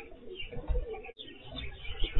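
Homing pigeons cooing at their loft, heard through a security camera's microphone, which sounds thin and cut off in the highs. There is a low bump a little under a second in.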